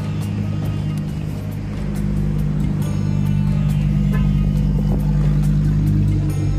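A car engine running with a steady low hum, heard under background music.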